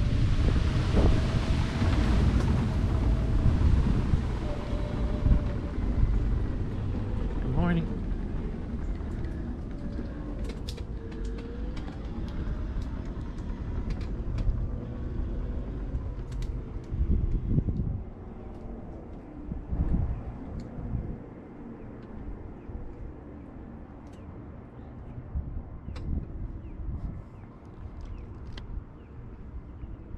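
Wind rumbling on the microphone along with the running noise of a mobility scooter rolling along a boardwalk. After several seconds it eases to a quieter outdoor background with faint wavering tones and scattered light clicks.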